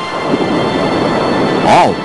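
A steady, loud rushing rumble of sea water, a sound effect of the sailing ship ploughing through the waves. A man's voice calls out near the end.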